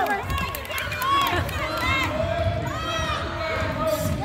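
Basketball players running and dribbling on a hardwood gym court, with short sneaker squeaks and the thump of the ball, amid shouting voices.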